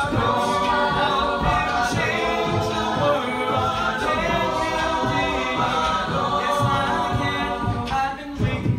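A mixed-voice a cappella group singing a pop song in close harmony, with a steady low beat underneath.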